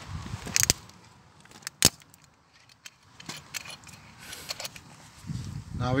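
Handling noise: a few sharp clicks and small metallic rattles, the sharpest about two seconds in, over faint rustling, with a voice starting right at the end.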